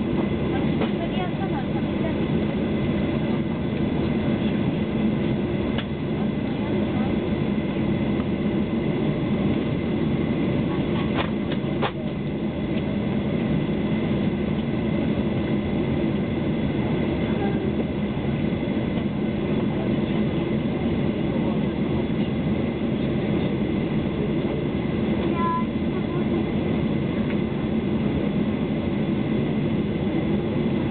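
Steady cabin noise inside a Boeing 737-800 on the ground, with its CFM56 engines at low power and a constant low hum that neither rises nor falls; no take-off thrust yet. There are a couple of faint clicks a little before halfway.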